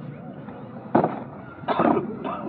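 Sharp sounds from a squad of cadets doing parade drill in unison: a crack about a second in and a second, slightly longer one near the end.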